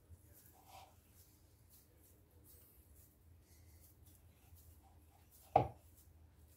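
Faint soft rustling and squishing of hands pressing and rolling a crumbly grated egg-and-cheese mixture into balls. A short voice sound comes near the end.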